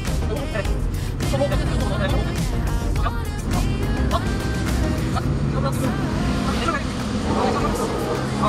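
Background music with a voice in it, over a steady low engine rumble from heavy machinery.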